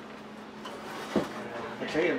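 A glass baking dish being put into an open oven: a knock about a second in and a sharper clink near the end, over faint background voices.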